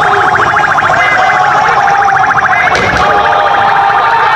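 A loud siren-like alarm tone pulsing rapidly and evenly over street crowd noise, with one short sharp crack about three seconds in.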